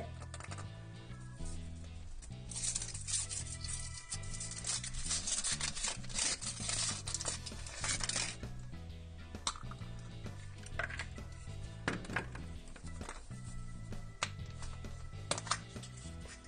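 Background music with a repeating bass line throughout. Over it, foil wrapper crinkling as a chocolate surprise egg is unwrapped, then a few scattered clicks as the plastic toy capsule inside is handled and opened.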